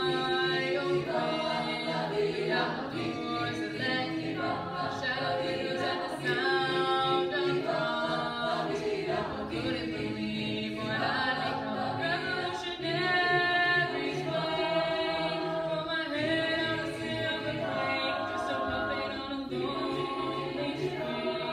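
An a cappella choir singing unaccompanied, many voices holding chords that move from one to the next.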